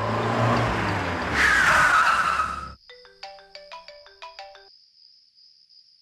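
A car drives off, its engine and tyre noise loud, with a tyre squeal falling in pitch before the sound cuts off suddenly at about three seconds. A mobile phone ringtone then plays a short electronic melody of stepped beeping tones.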